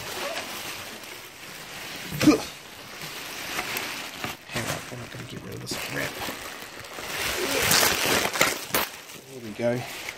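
Bubble wrap and plastic packing rustling and crinkling as it is pulled off an autoharp, with a single knock a little over two seconds in and heavier crackling near the end.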